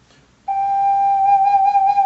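Ocarina playing one long, steady held note, starting about half a second in.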